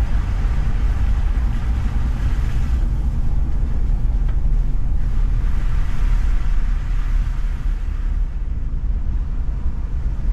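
Toyota Prado four-wheel drive driving along a wet dirt track, heard from inside the cabin: a steady low rumble of engine and road noise, with tyre hiss on the wet surface swelling twice.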